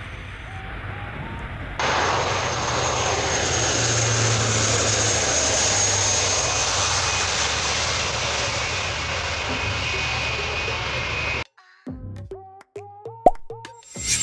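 Lockheed Martin C-130J Super Hercules taking off, its four turboprop engines at full power: a steady, loud rush with a high whine. It is quieter at first, loud from about two seconds in, and cuts off suddenly about two and a half seconds before the end. Short plopping musical notes follow.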